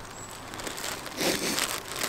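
Plastic bread bag crinkling as slices of bread are pulled out of it, growing louder about a second in.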